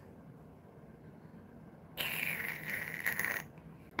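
Faint room tone, then about halfway through a short burst of noisy handling sound lasting just over a second, the sound of an object being picked up or moved close to the microphone.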